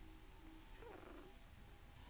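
A faint, brief whimper from a sleeping cocker spaniel puppy about a second in, its pitch falling, over near silence.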